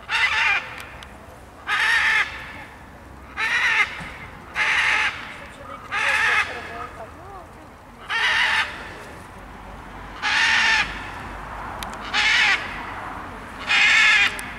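Scarlet macaw in flight giving loud, harsh squawks, one about every one and a half to two seconds, nine in all.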